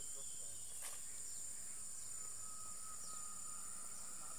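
A steady, high-pitched chorus of insects in the jungle undergrowth, with one short click about a second in.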